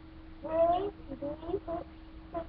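A child's high-pitched voice making short wordless vocal sounds: one longer sliding call about half a second in, then several brief ones. A faint steady tone runs underneath.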